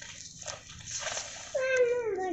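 An animal's whining cry that starts about a second and a half in and slides down in pitch, after some faint rustling.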